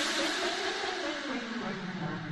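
Transition effect in a house DJ mix: a wash of noise fading away while a tone glides steadily downward, like a downlifter sweep between tracks.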